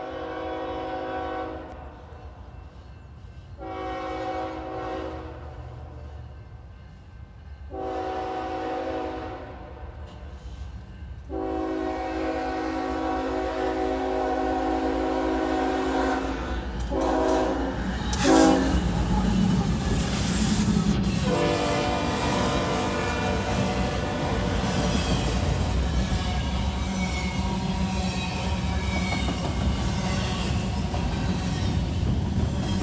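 Diesel freight train horn sounding a series of long chord blasts for a grade crossing, the fourth held about five seconds, then two short blasts. From about 18 seconds in, the locomotives pass close with a deep engine rumble, and the train's cars roll steadily by.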